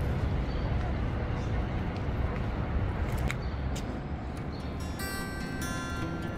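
Low, rumbling outdoor noise on a phone microphone with a few faint clicks, then guitar music comes in about five seconds in.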